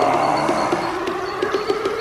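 Jungle terror electronic dance music: a sustained synth swell over a quick, light, evenly repeating percussion pattern.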